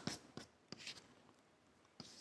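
Chalk writing on a blackboard, faint: a few light taps and scratches of the chalk in the first second.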